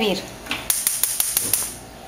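Gas stove burner being lit: a rapid run of igniter clicks over a hiss of gas for about a second.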